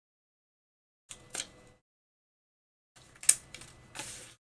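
Small paper scraps being handled and laid on a notebook page: brief papery rustles and taps in two short spells, the second busier and holding one sharp click a little past three seconds in.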